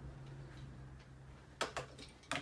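Plastic toy train set pieces clicking as a child handles them: faint scattered ticks, then two sharp clicks in quick succession near the end, over a steady low hum.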